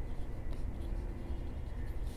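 Pen writing on paper, a faint scratching as a few words are written by hand.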